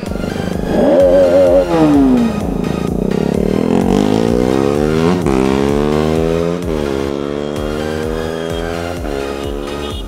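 A motorcycle engine revved several times, its pitch climbing and then dropping back, over background music with a steady beat.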